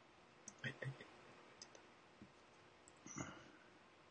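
Near silence broken by a few faint, scattered clicks, most of them grouped near the start, and a short soft noise about three seconds in.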